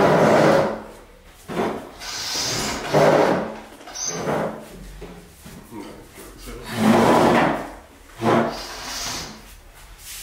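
A wooden dining table and its chairs being dragged and scraped across a hard floor in a series of short, separate drags as the table is shifted into a new position.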